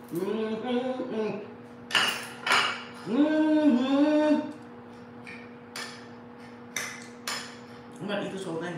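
A woman humming 'mmm' through closed lips with pleasure while eating, in two stretches, with a few sharp clinks of a fork against a plate between and after them.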